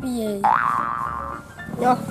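A comic 'boing' sound effect: about half a second in, a springy tone jumps up in pitch, wobbles as it settles, and holds for about a second.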